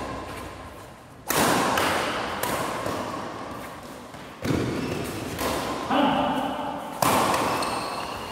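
Badminton rally: rackets striking a shuttlecock, four sharp hits one to three seconds apart, each ringing on in the echo of a large hall.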